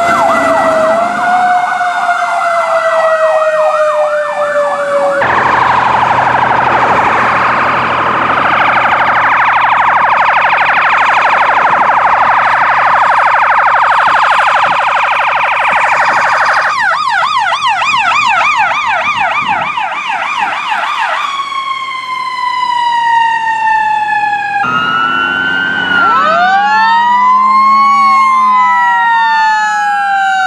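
Emergency-vehicle sirens on responding fire apparatus, changing abruptly every few seconds. First a falling wail, then a dense rapid warble, a fast yelp, and another slow falling wail. Near the end several sirens sound at once, their pitches rising and falling across each other.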